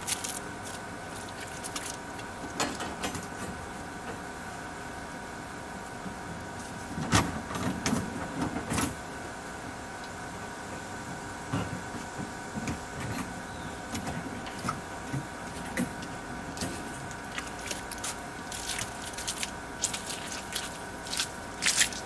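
Scattered light clicks and knocks from handling steel rebar on ICF foam forms, with a couple of sharper knocks about a third of the way in. A steady faint mechanical hum runs under them throughout.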